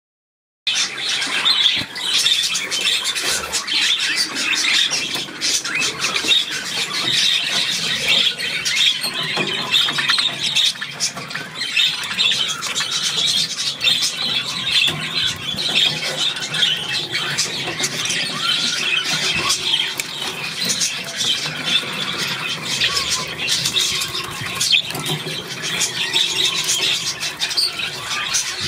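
A flock of budgerigars chattering without a break: a dense, high mix of many overlapping chirps, warbles and squawks.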